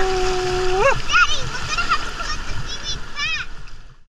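A voice holds a long steady 'ooh' that rises at its end, then gives a run of short, high, arching squeals, over the wash of water splashing on the rocks. The sound fades out at the very end.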